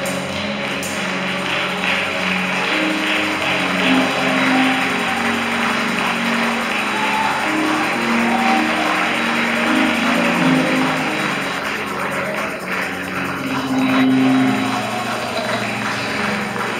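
Live gospel worship music: keyboard playing held chords, with tambourine shaking.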